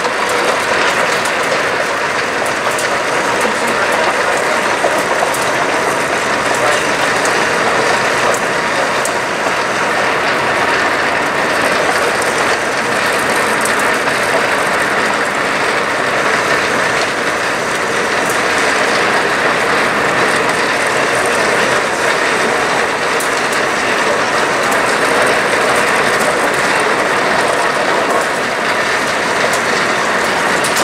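A plastic shopping cart riding a cart escalator (Vermaport), heard from inside its basket: a loud, continuous rattling clatter with many small clicks as the cart and its wheels shake on the moving conveyor.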